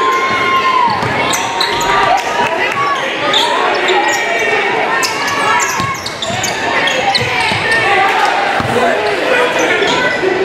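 Basketball game sounds in a gym: a basketball bouncing on the hardwood court amid a steady hubbub of crowd and player voices and shouts, echoing in the large hall.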